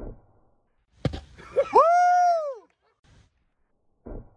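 A sharp knock about a second in, then a person's loud, high yell that rises and falls in pitch over most of a second.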